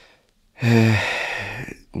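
A man's audible sigh: after a short pause, one long, steady-pitched voiced breath out lasting over a second, fading at the end.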